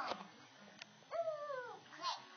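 A small child's high voice making a drawn-out, sing-song vocal sound that bends up and then falls, about a second in, as she reads aloud from a picture book without clear words. A faint click comes just before it.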